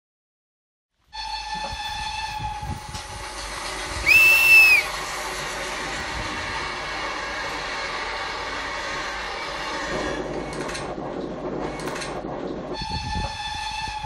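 Train noise: a steady running rattle with a constant hum that starts abruptly about a second in, with one short, loud, high whistle blast about four seconds in and a few clanks near the end.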